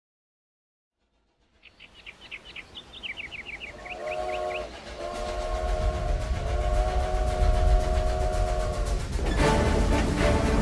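Steam locomotive whistle sounding several pitches at once, a short blast and then a long held one, over the rising rumble of the moving train. Music comes in loudly near the end.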